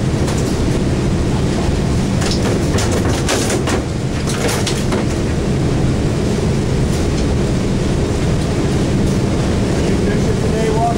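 A boat engine running steadily at idle, with a few brief sharp noises between about three and five seconds in.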